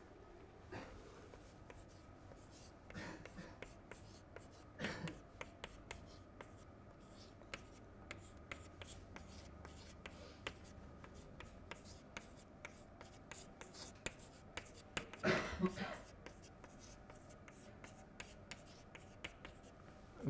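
Chalk tapping and scratching on a chalkboard as an equation is written out: a faint run of quick clicks with short pauses between strokes.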